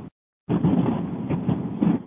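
Steady background noise carried over a telephone conference line, starting suddenly about half a second in after a dead-silent dropout.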